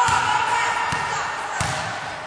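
Basketballs bouncing on a gym's hardwood floor, about three thuds in two seconds, under children's high-pitched shouting and chatter.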